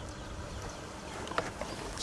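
Low, steady background noise, with a single soft click about one and a half seconds in.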